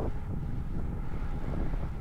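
Steady wind rumble buffeting the microphone of a camera on a road bike moving at about 35 km/h.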